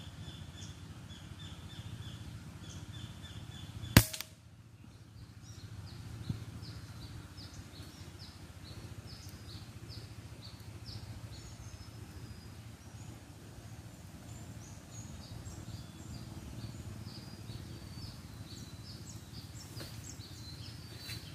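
A single sharp air rifle shot about four seconds in, the loudest sound, over a steady background of short, high, repeated chirps and a low hum.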